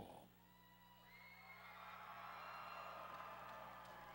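Faint arena crowd cheering with a few whoops, swelling slightly about a second in, over a steady low electrical hum.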